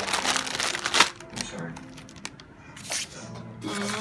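A clear plastic parts bag crinkling as it is handled, loudest in the first second, with more crinkling around three seconds in and just before the end.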